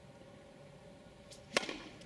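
Tennis serve: the racket strikes the ball once with a single sharp crack about a second and a half in.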